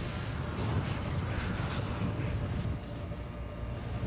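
Steady deep rumble with an even rushing hiss over it: the engine and flight sound of sci-fi ships in a TV episode's soundtrack.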